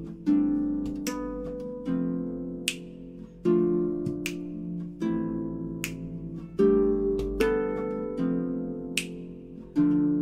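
Solo concert harp: full plucked chords struck about every one and a half seconds, each left to ring and fade, with sharp percussive clicks between some of them.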